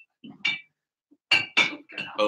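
A few short clinks and knocks of glass bottles being handled, with a gap of quiet between them.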